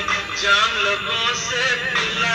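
A song playing: a man singing over instrumental backing, with the voice gliding up and down in pitch.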